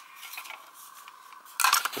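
Plastic audio cassette cases being handled: faint light clicks, then a sudden louder clatter of cases knocking and sliding together near the end.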